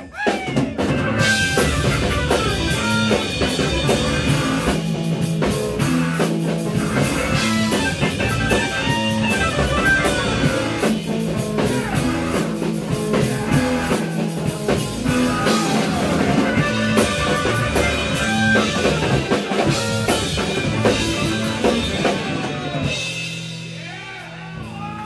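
Live rock band of electric bass guitar, drum kit and organ playing loudly. It comes in abruptly at the start and falls away about a second before the end.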